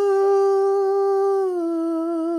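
A man humming one long held note, a little lower in pitch for the last part.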